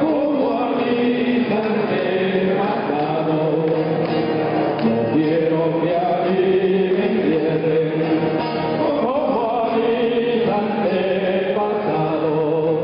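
Harmonica played close into a microphone, carrying a pasillo melody in held, wavering notes and chords, over two acoustic guitars accompanying.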